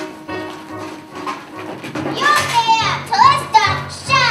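Young girls singing and calling out lines over a musical-theatre backing track with a repeated low bass pulse. About halfway through, one amplified girl's voice comes forward with sliding, bending phrases.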